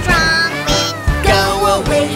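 Children's song: high cartoon voices singing over bright backing music.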